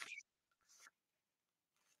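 Near silence: room tone broken by three faint, short rustles or scratches without pitch, one at the start, one just under a second in and a weaker one near the end.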